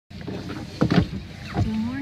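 A few knocks and rustles inside a car, the loudest just under a second in and again about a second and a half in, over a low rumble. A woman's voice begins right at the end.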